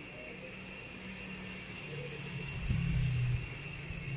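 Low hum of a motor vehicle engine running nearby, swelling from about two seconds in and easing near the end.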